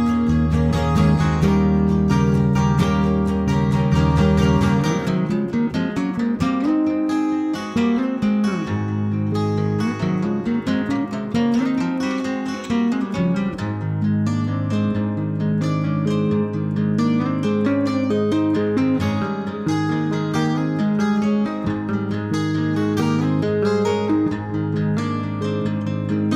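Instrumental passage of an indie-folk song on two acoustic guitars, picked and strummed, over an electric bass line. The low notes drop out about five seconds in and come back a few seconds later.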